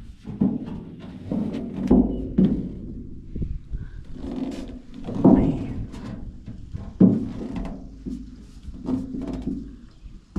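An old copper wash boiler handled and turned over: its thin metal body knocks hollowly several times, each knock followed by a low ring.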